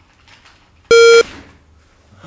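A single short, loud electronic beep at one steady pitch, lasting about a third of a second, about a second in, with faint keyboard clicking before it.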